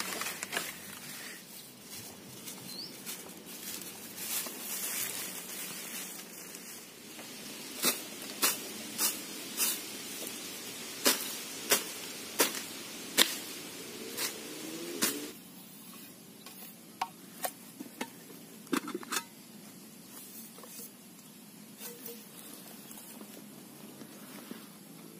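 Rustling through grass and undergrowth, then a run of about ten sharp strikes, roughly one every two-thirds of a second, from a blade chopping at vegetation near the ground, followed by a few scattered knocks.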